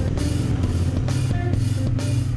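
Background music with guitar and a steady beat.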